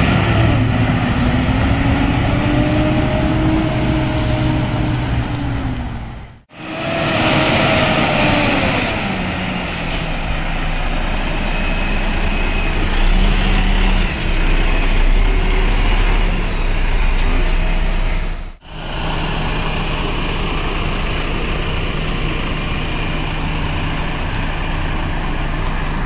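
Volvo FH16 750's 16-litre straight-six diesel engine running at low speed, its pitch rising and falling for the first few seconds, then settling into a steady idle. The sound breaks off twice, briefly.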